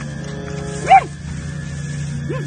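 A single loud, short yelp about a second in, rising and falling in pitch, over a steady low hum.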